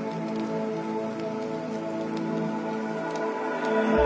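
Dark ambient music: slow, sustained synth pad chords with a faint crackling rain texture over them. A deep bass drone comes in at the very end.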